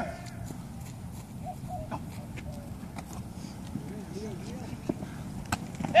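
Faint, distant shouts from players in a flag football play, over steady low background noise, with a few sharp clicks.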